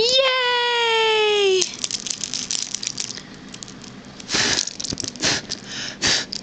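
A single drawn-out high-pitched vocal cry lasting about a second and a half, sliding slightly down in pitch, then two short breathy puffs a few seconds later.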